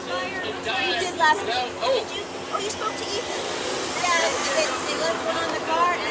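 Indistinct voices of several people talking over one another, with no single clear speaker, over a faint steady hum.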